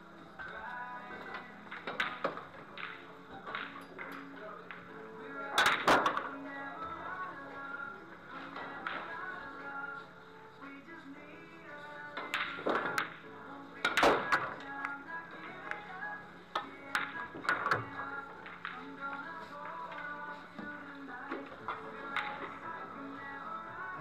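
Background music with sharp clicks of billiard balls and cue striking every few seconds, the loudest about six seconds in and again about fourteen seconds in.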